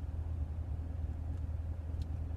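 Chevrolet Corvette Stingray (C7) V8 running, heard inside the cabin as a steady low rumble.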